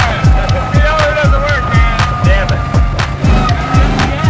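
Background music with a steady beat of deep bass kicks that drop in pitch, several a second, and a wavering melody over them.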